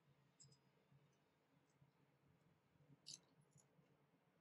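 Small spring scissors of a pocketknife snipping paper: a few faint metallic ticks, then one sharper snip about three seconds in with a lighter click just after.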